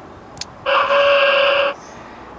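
A click, then about a second of loud, buzzy static with a steady tone through it from a CB radio's speaker.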